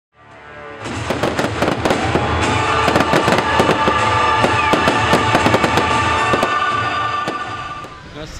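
Fireworks bursting in rapid crackles and bangs over a music soundtrack, fading in from silence over the first second.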